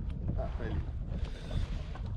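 Wind buffeting the microphone in a steady low rumble, with water lapping around a fishing kayak on choppy water.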